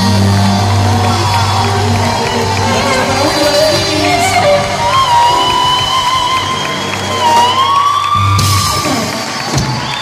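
Live reggae-rock band playing the closing bars of a song, with drums, bass, electric guitars, keyboards and held, gliding vocal lines, mixed with shouts from the audience. The band sound drops away about nine seconds in.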